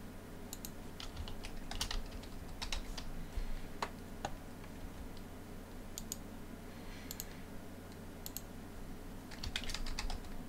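Typing on a computer keyboard: short, irregular runs of keystrokes with brief pauses between words.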